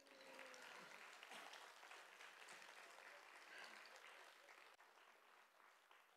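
Audience applauding faintly, fading away gradually.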